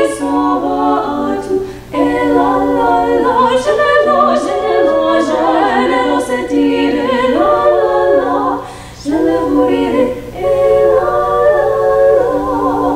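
Three young female voices singing a cappella in close harmony, in phrases with short breaths about two seconds in and again near nine and ten seconds.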